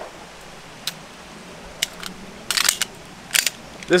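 A handgun being handled: a few sharp clicks spaced out early on, then short clusters of clicks and rattles in the second half.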